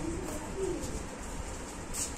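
Rooster making a low, wavering call that fades out within the first second.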